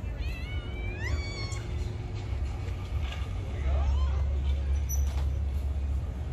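High-pitched voices calling out in short rising cries, mostly in the first second and a half, over a low rumble that grows louder in the second half.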